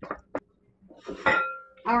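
A spoon knocking against a skillet as stirring of macaroni and cheese finishes, with a sharp click about a third of a second in.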